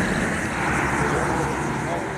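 Roadside ambience by a highway: a steady rush of traffic noise with indistinct voices of people standing nearby.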